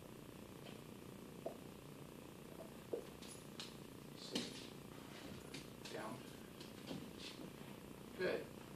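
Quiet room with a few faint, brief ticks and soft rustles from a small dog moving about and being lured into a lie-down by its handler's hand.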